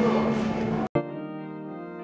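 Loud music with many held notes breaks off abruptly a little under a second in. Quieter organ music follows, playing long sustained chords.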